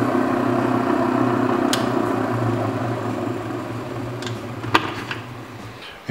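Ultra Tec faceting machine running its water-dripped 1500-grit diamond lap with a steady hum while the aquamarine is cut, with a few light clicks. The sound fades gradually over the last few seconds.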